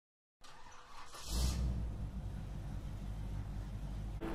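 A brief whoosh about a second in, then a quiet, steady low car-engine rumble, as in an intro sound effect.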